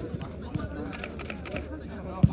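Voices on an open football pitch, with short runs of rapid sharp clicking in the middle. A football is kicked with a soft thud at the start.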